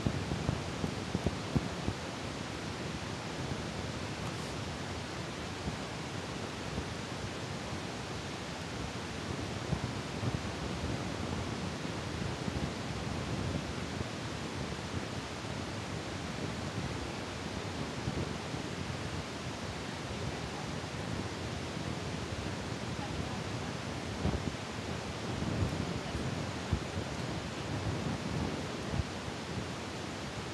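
Steady hiss of background noise picked up by a low-quality camera microphone, with irregular low rumbles of wind or handling on the microphone and a few brief knocks, heavier near the end.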